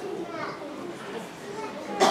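Several children's voices talking over one another, a general chatter with no single speaker standing out.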